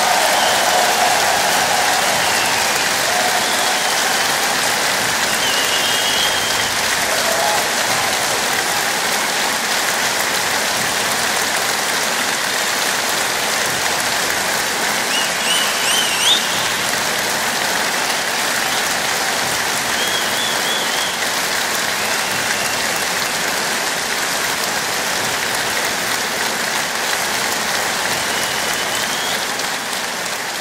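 A large concert audience applauding steadily after an opera aria, with a few whistles and cheers rising above the clapping, the loudest about halfway through.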